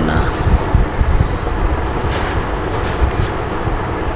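Loud, steady rumbling background noise, heaviest at the low end, with no speech over it.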